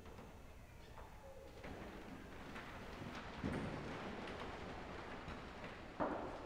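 Faint room sound of a church congregation moving and settling: soft rustling and shuffling with a few scattered light knocks, one a little louder about three and a half seconds in.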